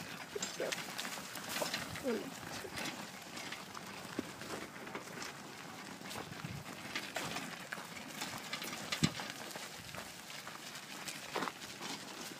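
Footsteps rustling through fallen leaves and grass, in an irregular run of crunches and scuffs, with a single spoken word about two seconds in.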